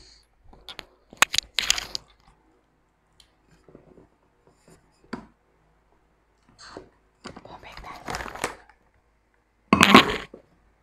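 Large plastic snack bag crinkling and rustling close to the microphone in irregular bursts. There are sharp crackles about a second and a half in, a longer rustle around eight seconds in, and the loudest burst at the very end.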